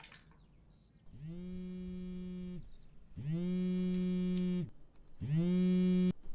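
A mobile phone on vibrate buzzing three times, each buzz a little over a second long with its pitch sliding up as it starts and down as it stops. Each buzz is louder than the last.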